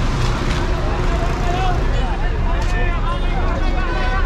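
Busy city street traffic: a steady rumble of car and motor engines, with people talking nearby over it.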